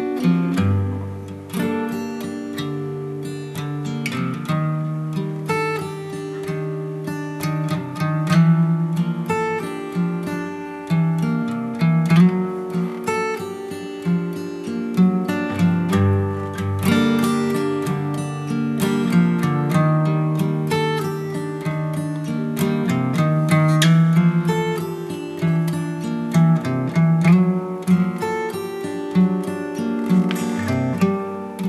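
Acoustic guitar picked and strummed in an instrumental passage of a song, without singing, with sharp note attacks over a low, moving bass line.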